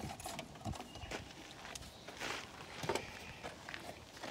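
Scattered light knocks and clicks from a pull-out camp kitchen drawer being handled as its hinged wooden lid is lifted open.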